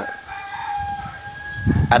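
A rooster crowing in the background: one long call held at a nearly level pitch for almost two seconds.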